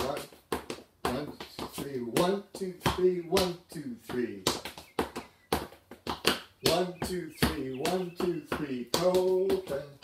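Hard-soled leather shoes tapping and striking a tiled floor in a waltz clog step dance, a quick run of sharp clicks and knocks in waltz rhythm. A man's voice sings the tune along with the steps.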